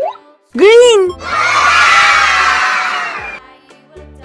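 Cartoon sound effects over cheerful children's background music. A quick rising whistle glide and a wobbly boing come first, then about two seconds of a crowd of children cheering that fades out.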